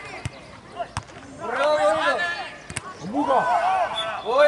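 A football being kicked on a grass pitch: three sharp single thuds, spaced apart. Players' raised voices shouting across the pitch join in from about a second and a half in and are the loudest sound.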